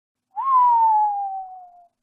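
Hinge of an aluminium briefcase creaking as the lid is lifted: one drawn-out squeak that jumps up in pitch and then slides slowly down over about a second and a half.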